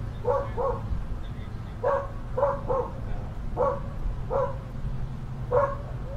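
A dog barking in short, separate barks, about eight of them, often in pairs or threes, over a steady low hum.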